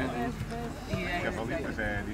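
People talking at moderate level, with a small child's high-pitched voice among them.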